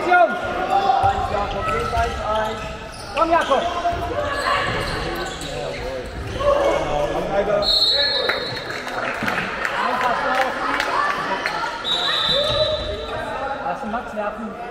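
Indoor handball play in an echoing sports hall: players calling out, and the ball bouncing and knocking on the wooden court. A referee's whistle blows twice, briefly just past halfway and longer later on, as play is stopped.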